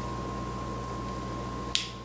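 A single short, sharp click near the end, over a steady thin high tone and a low hum.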